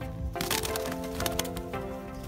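Background music of held instrumental notes, with a quick run of sharp crackling clicks starting about half a second in and fading by one and a half seconds.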